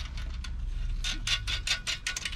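A quick run of small metal clicks, about ten in the last second, as a bolt is worked by hand through a steel mounting bracket on an aluminium transmission oil cooler.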